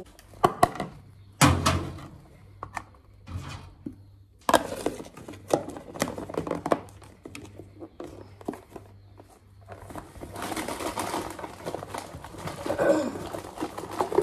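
Clicks and knocks of a plastic food container and its lid on a stone counter, with a quick run of clicks as the lid is pressed down and snapped shut. Near the end comes the rustle of a fabric lunch bag being packed.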